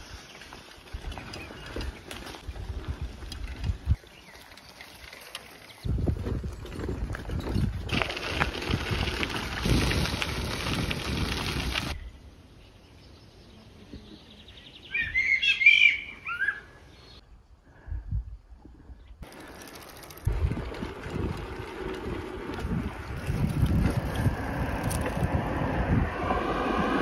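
Riding noise from a bicycle on a dirt forest trail and gravel road: wind on the microphone and tyre rumble, in several stretches that start and stop abruptly. A bird chirps briefly about fifteen seconds in, during a quieter stretch.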